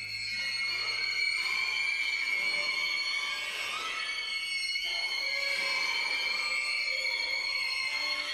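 Live contemporary chamber-ensemble music: a single high pitch held steadily, with a thin, squeal-like edge, over a soft airy texture with hardly any bass.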